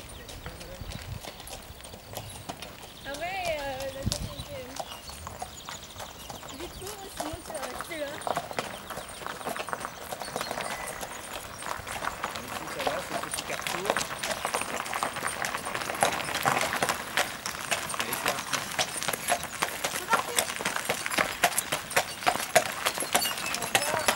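Hooves of two draft horses walking on a road, one of them pulling a covered wagon, clip-clopping in an even walking rhythm that grows louder as they come closer over the second half.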